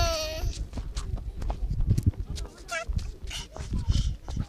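A toddler's high, sliding vocal sound trails off in the first half-second, followed by a low rumble of wind on the microphone and a short, fainter voice sound near the middle.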